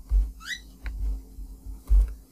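Dull low knocks and a light click from keyboard and mouse use at a desk while code is copied and pasted, with a short rising squeak about half a second in.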